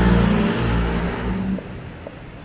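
A motor vehicle engine running steadily close by, then falling away about a second and a half in.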